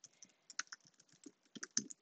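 Faint, irregular keystrokes on a computer keyboard as a line of code is typed.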